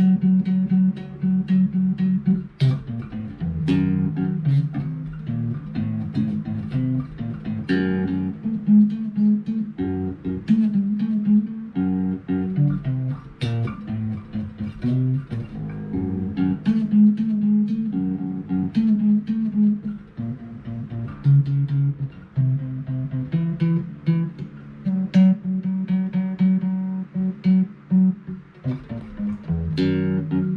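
Electric bass guitar played fingerstyle: a steady line of plucked single notes in a low-to-middle register.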